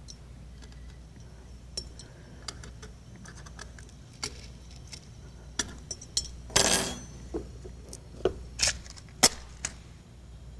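Chunks of calcium carbide dropped with tongs into a glass filter flask holding water: a run of light glassy clinks and taps, with a short louder rush a little past halfway. The flask is then stoppered with a cork, with a few more sharp clinks near the end.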